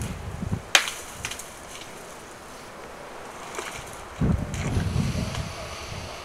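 Wind gusting on the microphone, with a single sharp knock a little under a second in and a few fainter clicks just after; the gusts come back about four seconds in.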